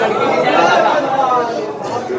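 Speech and chatter: several men's voices talking at once.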